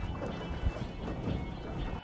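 Wind rumbling on the microphone and choppy water slapping on a boat, with faint background music underneath.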